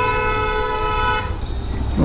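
A vehicle horn sounding one steady, unbroken tone for about a second and a half, cutting off a little past the middle, over the low steady rumble of a moving motorcycle.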